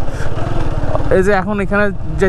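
Motorcycle engine running with a fast, even low pulse as the bike rides along a dirt track. A man's voice speaks over it from about a second in.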